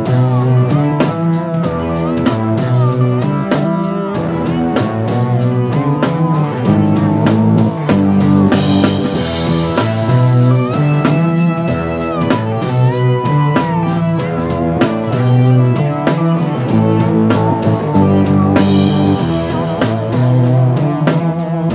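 Live band playing an instrumental rock passage: electric guitar and keyboard over a drum kit keeping a steady beat, with notes bending in pitch. Cymbal crashes ring out about eight seconds in and again near the end.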